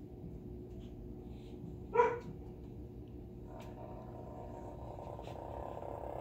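American bullfrog calling while being handled: one short, loud croak about two seconds in, then a longer, buzzing call that builds from about three and a half seconds in.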